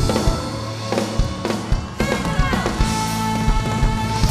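Live band playing an instrumental passage, with drum-kit hits and cymbals over sustained chords.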